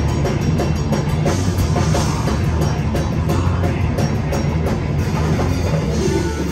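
Live metal band playing at full volume: distorted electric guitars and keyboard over a rapid, steady drum beat with cymbals.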